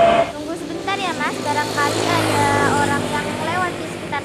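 A road vehicle passing, its low engine hum strongest in the second half, with short, bending, voice-like calls over it.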